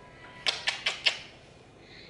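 A quick run of about five sharp, wet smacking sounds within half a second: kisses planted on a toddler's cheek.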